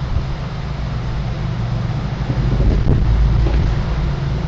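Steady low rumble with a faint hiss, background noise picked up through a video call's microphone.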